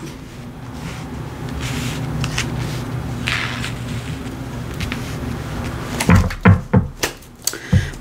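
A low steady hum, then several sharp knocks and thumps in the last two seconds as a tarot deck is picked up and handled against the table.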